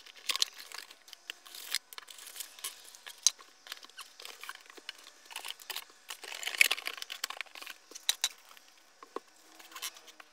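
A cardboard box being opened and unpacked by hand: cardboard lids and inserts sliding and scraping, plastic bags and wrapping crinkling, with scattered small taps and clicks. The handling comes in irregular bursts, loudest a little after halfway through.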